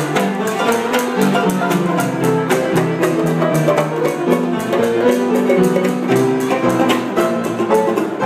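Upright piano and banjo playing a ragtime tune together, with a steady beat of picked banjo notes over the piano chords.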